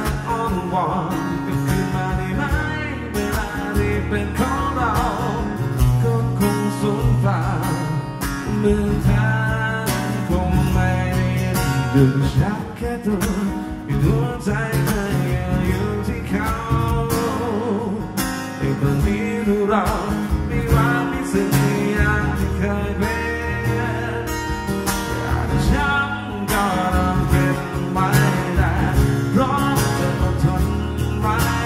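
A man singing a song while strumming chords on a Martin DCME acoustic guitar, one voice with one guitar.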